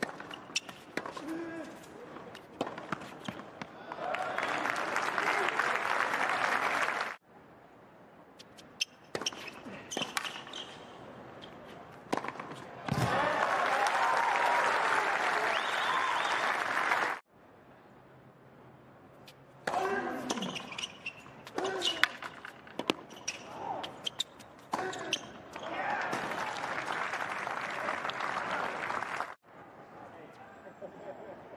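Tennis ball bouncing and being struck by rackets in rallies, each point followed by crowd applause and cheering, three times, each burst of applause cut off abruptly.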